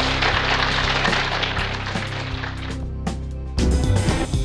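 Outro music with sustained low bass notes, getting louder with sharper beats near the end.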